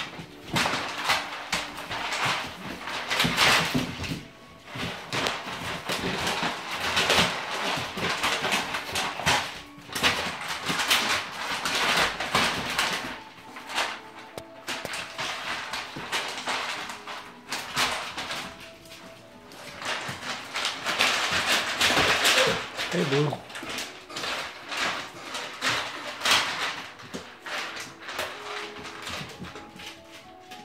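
Puppies playing rough together: irregular scuffling and scratching of paws and bodies on the floor and in the wood-pellet litter, with a brief gliding whine about two-thirds of the way through.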